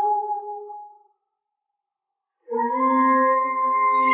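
A cappella layered voices holding a sustained chord that fades out about a second in. After a second and a half of silence, a new held chord of stacked voices comes in.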